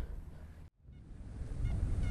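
Low wind noise on the microphone, building up after a brief dead gap, with a few faint, short honks of geese.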